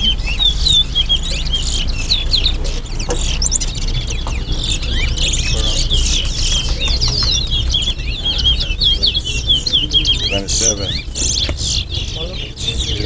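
Caged male towa-towa seed finches singing in a bird race, with fast, twittering, looping phrases repeated almost without a break.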